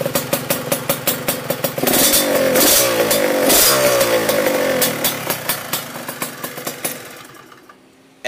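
Yamaha RX-King 135cc two-stroke single-cylinder engine running through a full stainless exhaust, with a quick, even popping beat at idle. It is revved up and back down a couple of times between about two and five seconds in, then settles and grows quieter toward the end. The engine sound is smooth and the exhaust note crisp.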